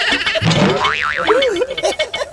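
Cartoon comedy sound effects over music: a wobbling, springy boing about a second in, followed by short warbling tones.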